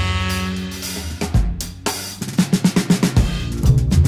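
Live jazz band with a drum kit: held band notes fade, then a quick drum fill of rapid hits leads the full band back in near the end.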